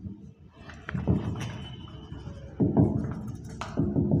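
Marker pen writing on a whiteboard: short taps and scrapes of the tip against the board, with a brief thin squeak about a second and a half in.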